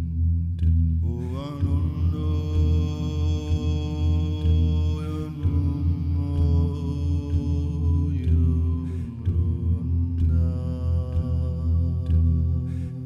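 Meditative chant-like singing from a man's voice with no words: long held vowel notes over a steady low drone of layered voices. The first note slides up about a second in and is held, the note changes about five seconds in, and a new held note begins near ten seconds.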